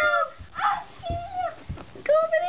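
Young children's high-pitched wordless squeals and vocal noises in short bursts, with a few soft thumps of hands and knees on the floor.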